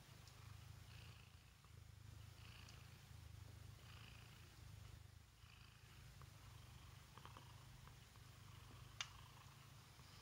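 Domestic cat purring close by, the purr swelling and easing with each breath about every one and a half seconds. A single sharp click about nine seconds in.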